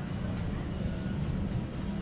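Steady low rumble of street traffic, with an engine running nearby.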